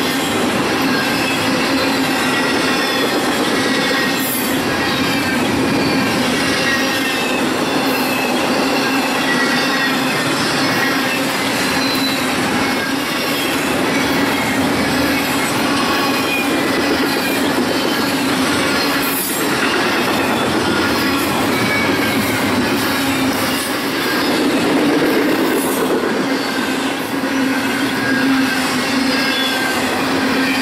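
Double-stack intermodal freight train rolling past close by: a steady noise of steel wheels on rail, with high flange squeals coming and going throughout and a few sharp clicks from the wheels and cars.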